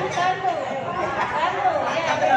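Several people talking at once: group chatter of voices overlapping.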